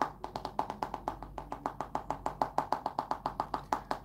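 A fast, even run of short, sharp clicks, about nine or ten a second, starting at once and stopping just before the end.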